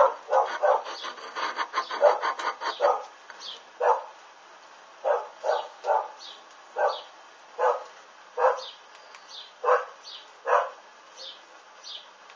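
A dog barking: a quick run of barks in the first three seconds, then single barks every half second to a second and a half, stopping a little before the end.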